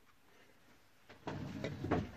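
Near silence, then about a second in a short rustling, scraping handling noise of objects moved across a work surface.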